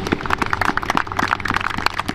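Several people clapping their hands, many quick overlapping claps at an uneven pace.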